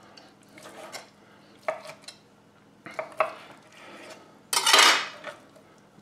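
A chef's knife slicing grilled chicken thighs on a wooden cutting board: a few light, scattered knocks of the blade on the board, then a louder noise lasting about half a second near the end.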